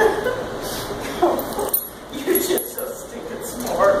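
A dog whimpering and yipping in several short calls, the last one rising in pitch near the end.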